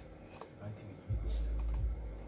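A few light clicks like typing, then about a second in a loud low rumble that lasts to the end, like handling or breath close to the studio microphone.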